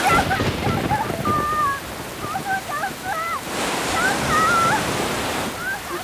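Rushing floodwater and heavy rain, a steady roar that swells louder past the middle, with a girl shouting desperately for help over it.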